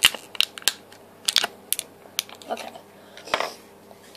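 Clear plastic wrapper crinkling and crackling in irregular sharp bursts as it is handled and pulled open to free a small pink pig eraser.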